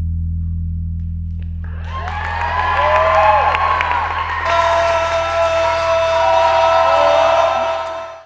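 Electric bass guitar holding a low note that rings on and slowly fades. About two seconds in, audience cheering, whooping and clapping starts and grows louder.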